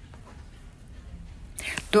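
A pause in a woman's narration with only faint background hiss, then a short breath in about a second and a half in, and her voice starting again just at the end.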